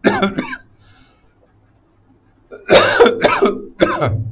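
A man coughing: one short cough at the start, then a quick run of three coughs about two and a half seconds in.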